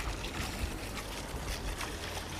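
Steady low engine rumble with a hiss of wind and water, from the vehicle pacing the rowing crew.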